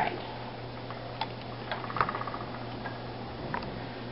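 Wooden spinning wheel turning while yarn is plied, giving scattered light clicks and knocks from its moving parts, with a brief run of quick ticks about two seconds in.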